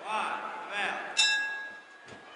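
A wrestling ring bell struck once about a second in, ringing with a clear tone that dies away: the bell starting the second fall of the match.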